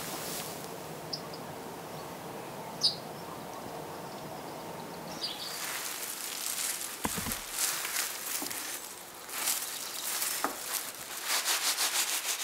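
Gloved hands rubbing dried celery umbels to free the seeds: a dry crackling rustle that turns into quick, regular rubbing strokes near the end. Before it there is a faint steady hiss with a few light ticks.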